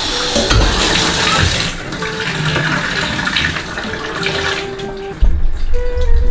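Water pouring from an overhead rain shower head and splattering in a tiled shower, a steady hiss that dies away about five seconds in as the shower is shut off.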